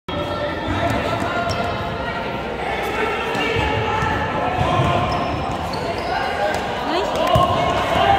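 A basketball bouncing on an indoor court amid overlapping voices of players and spectators calling out, with a few short high sneaker squeaks, all echoing in a large gym.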